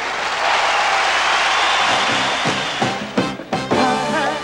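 Live soul band between two songs: a loud, noisy wash of sound for the first two seconds or so, then drum strokes about two and a half seconds in as the band starts the next number.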